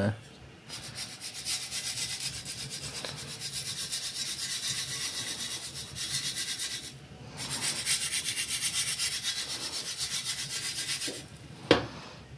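Crushed eggshell and charcoal grit being rubbed through a sieve by hand, a dry scraping in quick, even strokes. It goes in two spells with a short pause about seven seconds in.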